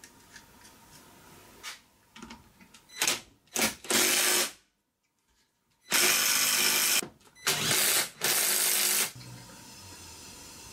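PowerPlus 20 V cordless impact wrench hammering in bursts as it tightens the clutch drum nut on a GY6 scooter engine. Three short bursts come about three seconds in, then, after a moment of silence, three longer runs of roughly half a second to a second each. Faint clicks of the drum and nut being handled come first.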